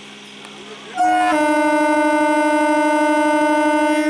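An EMU local train's horn, blown once about a second in, after a steady hum. It opens with a brief higher note, then drops at once to a steady lower tone held for about three seconds.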